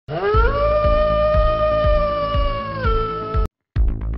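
A long drawn-out cat yowl over a low beat of about two thumps a second. The yowl rises in pitch at first, holds, drops near the end and cuts off suddenly with a click.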